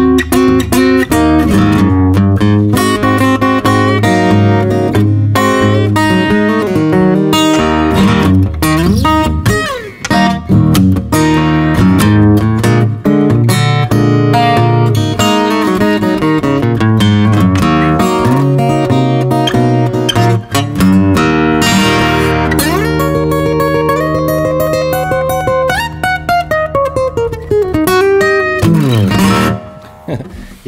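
Cort Core Series acoustic guitar, an OM-body cutaway with a mahogany top, fingerpicked without pause. Notes glide up or down in pitch now and then, and the playing stops near the end.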